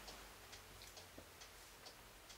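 Near silence: quiet room tone with faint, evenly spaced ticks, about two to three a second.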